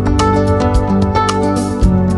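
Instrumental theme music with a steady beat, the TV station's closing ident music.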